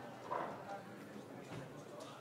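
Faint footsteps of a speaker walking up to a podium in a conference hall, with one last short burst of dying applause about a third of a second in.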